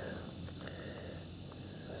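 Quiet field ambience with faint steady high insect chirring, and a soft rustle of fingers in dry soil and corn stubble as a stone point is picked up.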